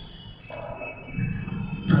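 A pause in a man's narration: low room noise with a faint steady high whine, and his voice starting again right at the end.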